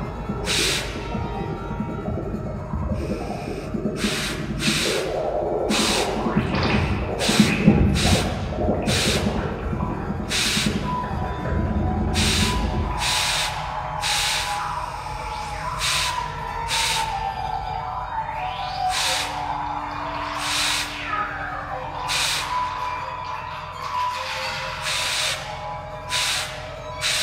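Live improvised ensemble music: a steady beat of sharp percussive hits about one and a half a second, over a dense low rumble that drops out about halfway, after which thin sustained high tones carry on over the beat.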